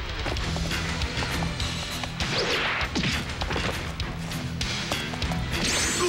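Background music with a pulsing beat under fight sound effects: repeated hits, with a louder crash about two seconds in and another near the end.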